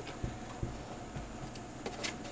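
Faint handling sounds: a few soft, irregular knocks and ticks as hands work at the front of a radio in a metal case, over a faint steady hum.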